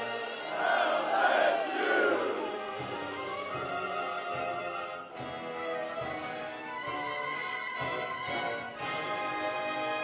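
Wind ensemble and choir performing. There is a louder swell of vibrato singing in the first two seconds or so, then sustained held chords.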